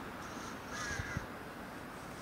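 A single short, harsh bird call about a second in, over a steady faint hiss, with two soft low thumps near its end.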